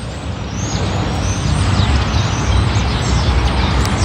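Heavy road vehicle running close by, a dense low rumble that grows louder about half a second in and stays loud.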